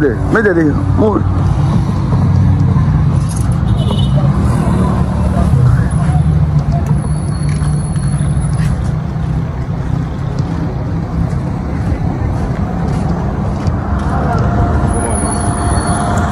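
Steady low rumble of outdoor background noise with an even hiss above it, and faint thin high tones about six seconds in and again near the end.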